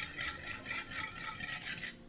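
Wire whisk beating egg and milk in a mixing bowl, a quick rhythmic scraping and rattling of the wires against the bowl at about six strokes a second.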